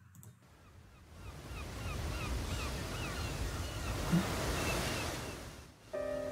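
Ocean surf washing in a wave of sound that swells up over a few seconds and fades away. A quick run of short, high seabird calls sounds over it.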